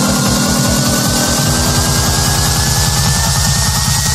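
Electronic hardcore dance music in a build-up: a fast, rolling bass-drum pattern under a synth tone that rises slowly in pitch, with more sustained synth notes joining about a second and a half in.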